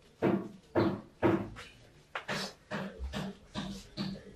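Banknotes counted by hand: a series of short papery flicks, three spaced ones at first, then a quicker, softer run of about three a second from about halfway.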